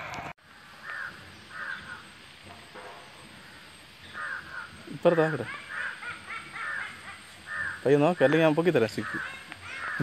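Crows cawing over and over, short harsh calls coming in bunches about twice a second. A man's voice breaks in loudly about halfway through and again near the end.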